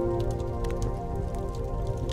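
Fireplace crackling with scattered sharp pops, under harp notes left ringing and fading.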